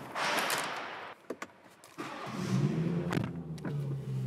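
A BMW's engine starting about two seconds in and settling into a steady idle. Before it come a rustle and a couple of short clicks as someone gets into the car.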